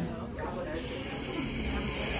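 A steady hiss starts under a second in and runs on, over a low murmur of voices.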